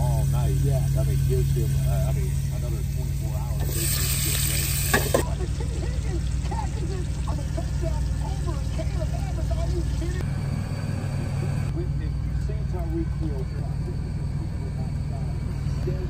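Talk from a TV sports news broadcast over a steady low hum, with a brief burst of hiss about four seconds in.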